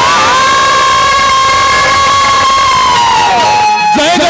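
A long, high-pitched held vocal note: the voice slides up into it, holds almost level for about three seconds, then falls away, over a steady background din.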